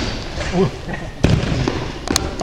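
A single sharp bang a little over a second in, ringing on briefly in a large hall.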